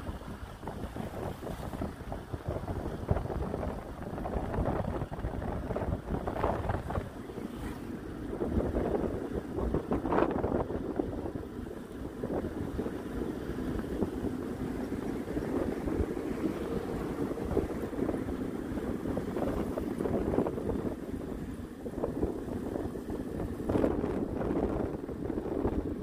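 Steady rumble of a moving vehicle's engine and road noise, with wind buffeting the microphone.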